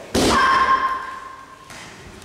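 A taekwondo kick strikes a handheld kick pad with a sharp slap. A high, steady tone follows for about a second and a half, then cuts off suddenly.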